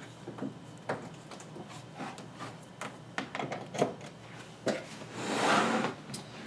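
Scattered light clicks and knocks from hands working on a MakerBot Replicator+ 3D printer while its power cord is plugged in. A longer swishing noise comes near the end.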